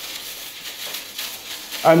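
A stainless steel bowl of dishwater heating on a hot wood stove top gives a faint, steady sizzling hiss.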